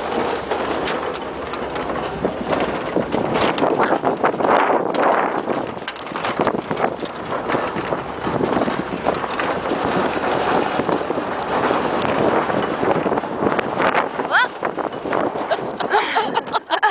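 Tow vehicle jolting across rough grass: continuous rattling and knocking, with voices over it.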